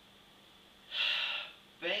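A man's sharp intake of breath, a short breathy rush of about half a second coming about a second in, just before he speaks again.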